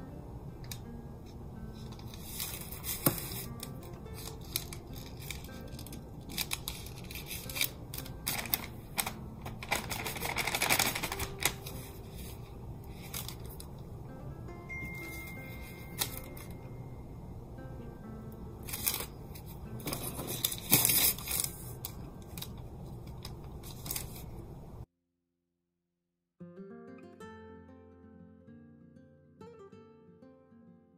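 Hands pressing and rubbing paper on a wooden plaque, with small knocks and crinkles, over quiet guitar music. The sound cuts out about 25 seconds in, and after a short gap acoustic guitar music plays on its own.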